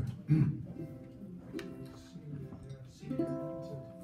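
Ukulele played softly, about three chords struck and left to ring as the introduction to a slow song.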